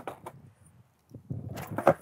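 Skateboard wheels rolling on concrete, then a few sharp wooden knocks near the end as the board is popped for a kickflip attempt.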